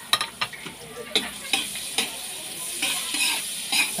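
Chopped onion and garlic sizzling in melted butter in an aluminium wok, with a metal spatula scraping and clicking against the pan at irregular strokes as they are stirred.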